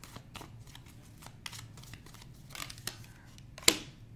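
Tarot cards being handled: faint rustles and light clicks as a card is drawn from the deck, then one sharp card snap near the end as it is laid down on the spread.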